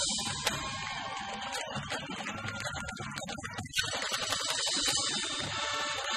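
High school marching band playing: brass with sousaphones over bass drum strokes and cymbal crashes. The band drops back briefly a little before four seconds in, then comes back in louder.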